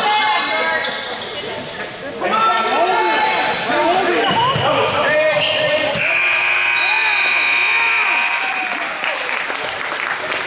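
Basketball game sounds in a gym: sneakers squeaking on the hardwood court, the ball bouncing, and players' voices echoing. About six seconds in, a steady tone holds for about two seconds.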